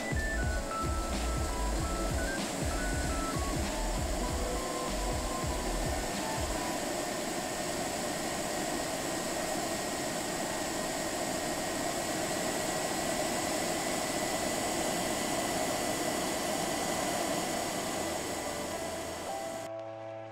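Pet grooming dryer blowing steadily, an even rushing hiss with a faint high whine that cuts off just before the end. Background music with a beat plays over the first few seconds.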